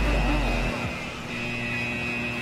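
Quiet breakdown in an electronic mashup track: a held high tone over a noisy wash, with a low bass that drops out about a third of the way in.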